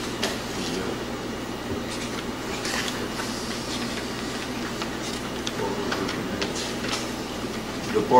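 Paper rustling and crackling in short scattered bursts as sheets are handled and pages turned, over steady room noise.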